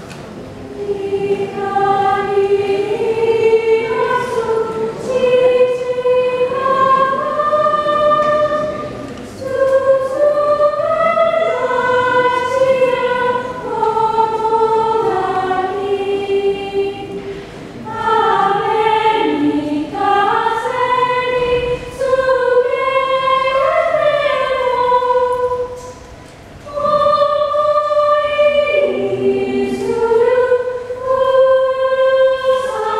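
Choir singing a medley of traditional Japanese songs in slow, sustained phrases, with short breaks between phrases about 9, 18 and 26 seconds in.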